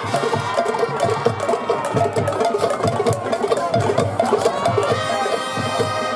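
Marching band playing: sustained horn and woodwind chords over a steady beat of marching drums and percussion.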